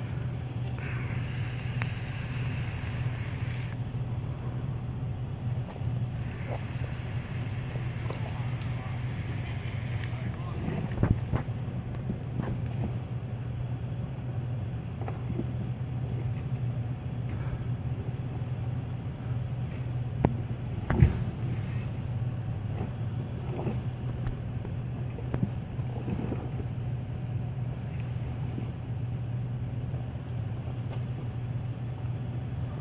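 Toyota FJ Cruiser engine running at a low, steady crawl while climbing a rocky trail. A couple of sharp knocks stand out, one about a third of the way in and a louder one about two-thirds in.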